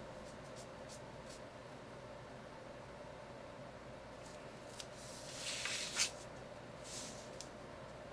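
Marker tip drawing on paper while an outline is traced: a few faint scratches early, then a longer rasping stroke that swells from about five seconds in and ends sharply near six seconds, with a shorter stroke near seven seconds.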